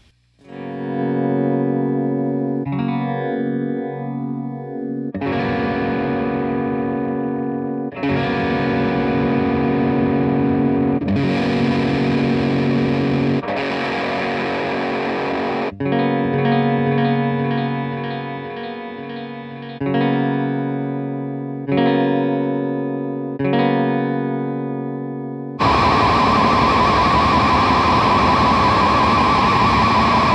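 Epiphone SG electric guitar played through an effects pedalboard into a modded '65 Fender Bassman amp: distorted chords held for a few seconds each. Near the start the pitch slides up and down, in the middle the tone wobbles evenly, and near the end comes a loud, dense fuzz.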